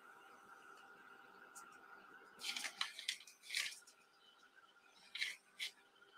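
Quiet room hum with a few short, soft rustling and scraping sounds of hands handling painting materials.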